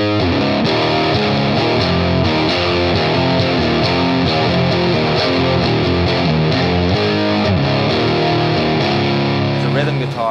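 Rock music led by distorted electric guitar, loud and steady, with the full band playing.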